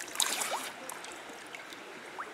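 Water splashed onto a face from cupped hands and dripping back into a stream: a few short splashes in the first moment, then a light steady trickle of drips.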